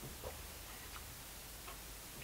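Quiet room tone with a low hum and a few faint, short ticks spaced irregularly, about four or five in all.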